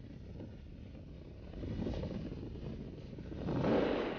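Freefall wind rushing over the camera's microphone, a steady low rumble that swells about three and a half seconds in.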